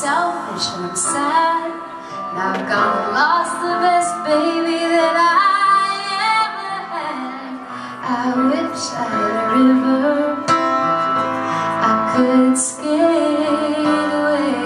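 A woman singing with piano accompaniment, her voice gliding between long held notes.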